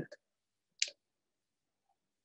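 A single short click about a second in; otherwise near silence.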